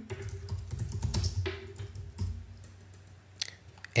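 Typing on a computer keyboard: a quick run of keystrokes for about two seconds, then one more click near the end, over a low steady hum.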